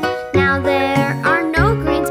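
Bouncy children's nursery-rhyme music, with pitched notes changing about twice a second and a few gliding tones.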